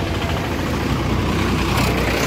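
Steady low rumble of motor traffic, vehicle engines running close by.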